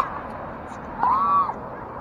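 Pickleball paddle hitting the ball with a sharp pop, then about a second later a half-second squeak that rises and falls in pitch.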